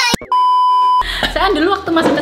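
An edited-in electronic bleep: two quick chirping sweeps, then a steady high beep lasting about two-thirds of a second, cut off abruptly as talking starts about a second in.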